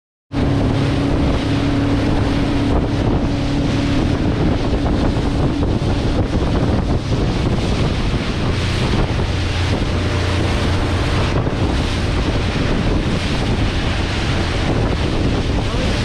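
Wind buffeting the microphone over water rushing and splashing along the hull of a fast-moving motorboat, with a steady hum during the first several seconds.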